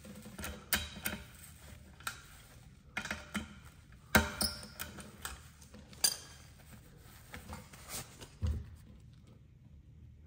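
Irregular metallic clicks and taps of an 11 mm socket and wrench working loose the nut on a TPMS sensor's valve stem at the wheel rim, the sharpest about four seconds in. The sounds thin out in the last second or so.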